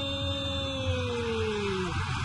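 A male football commentator's long drawn-out shout, held on one pitch and falling away near the end, over steady stadium crowd noise, as a goal goes in.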